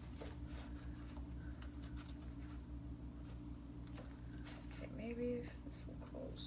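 Faint, scattered clicks and rustles of a small purse being handled as its clasp is worked to close it, over a steady low hum. A short hummed voice sound comes about five seconds in.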